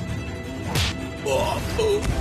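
Fight-scene whoosh effect over dramatic background music: a sharp swish about three-quarters of a second in, followed by a wavering, voice-like cry.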